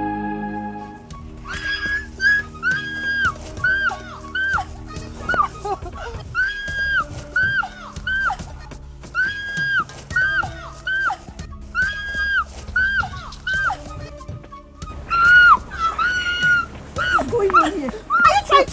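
Background film score: a high melody repeats a short phrase of held notes and falling bends about every two and a half seconds over a sustained low note. The phrase changes about three seconds before the end.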